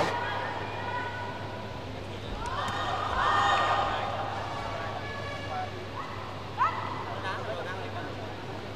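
Raised voices calling out in the arena, once from about two seconds to four seconds in and again briefly near seven seconds, over a steady low hum.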